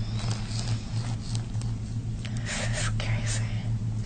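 A steady low hum, with faint whispering over it, most noticeable just past the middle.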